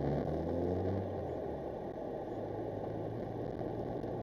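Car engine heard from inside the cabin, rising in pitch over the first second or so as the car accelerates away from a junction, then settling into a steady engine and road rumble. The sound is muffled, with little treble.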